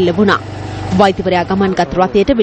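A voice speaking, as in news narration, with a steady low hum, like a passing vehicle, under it for about the first second.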